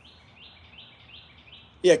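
A bird singing faintly: a quick run of short, evenly spaced high notes, about three a second.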